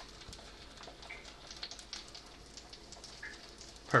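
Trout fillets searing skin-side down in hot oil, a faint sizzle with many small, scattered pops: a gentle pop that shows the pan is hot enough to cook the fish without burning the skin.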